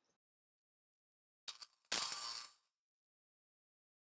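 A short click about one and a half seconds in, then a brief clinking clatter lasting under a second, with dead silence around them.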